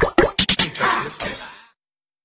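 Animation sound effects: a quick run of pops and clicks, then a short noisy swish that cuts off abruptly about one and a half seconds in.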